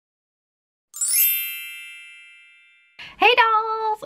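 A bright chime sound effect: a quick upward shimmer into a single ringing ding, about a second in, that fades away over about two seconds. A woman's voice starts near the end.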